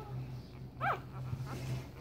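A young puppy gives one short, high whimper that rises and falls in pitch, about a second in.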